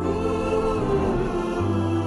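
Music with held choir-like voices over a low sustained bass tone.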